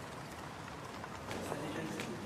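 Outdoor street ambience: a steady hiss of background noise with indistinct voices, joined about a second and a half in by a run of short, hard knocks like steps on stone.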